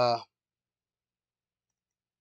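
A man's drawn-out "uh" ends about a quarter second in, then near silence.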